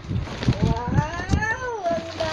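A baby's high-pitched voice in one long squeal that rises in pitch and falls back near the end, with knocks and rustling from handling plastic close by.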